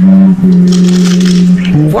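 Background music holding a steady low note that steps down near the end, under crackling and crunching as the hard grey outer coating of a clay ball cracks under squeezing fingers to show the purple clay inside.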